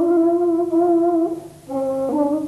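Solo Persian ney (seven-node reed flute) playing a long held note with a slight waver. The note breaks off briefly about one and a half seconds in, and a lower note begins.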